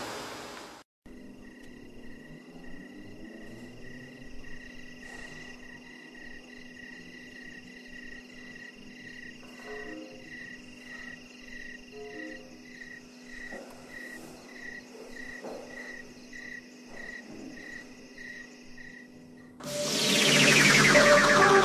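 A cricket chirping steadily, about one and a half chirps a second, over a low steady hum.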